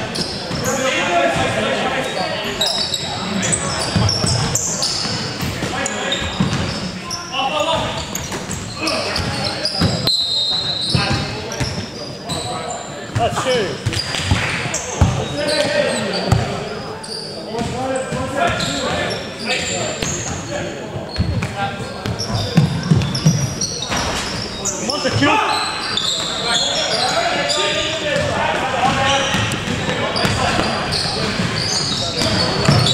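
Live basketball game in a gym: the ball dribbling on the hardwood floor, sneakers squeaking and players calling out, all echoing in the large hall.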